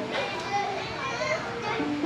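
Children's voices, high-pitched chatter and calls, with faint music underneath.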